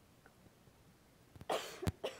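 Near silence, then a single cough about one and a half seconds in, picked up close on a handheld microphone, followed by a short sharp click.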